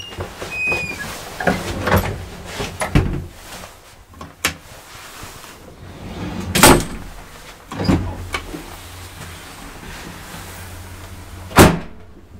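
Old Svenska Hiss traction elevator in motion: a low steady hum under a string of metallic clunks and rattles from the car and its gate, with a short squeak in the first second and the loudest clunk near the end.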